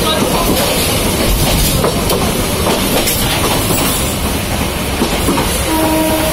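Passenger train of the Yangon Circular Railway running, heard through an open carriage window: the steady noise and rattle of the wheels on the rails. A steady pitched tone comes in near the end.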